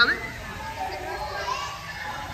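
Background chatter of visitors' voices, children among them, with a spoken word ending right at the start.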